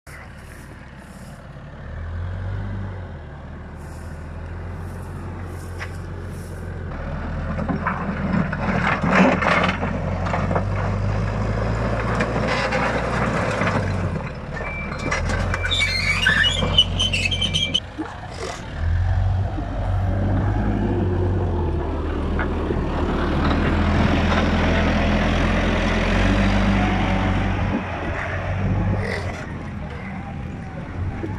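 Heavy digger's diesel engine running, its pitch and level rising and falling as it works, with stones clattering as it knocks down a stone wall. A high metallic screech comes about halfway through.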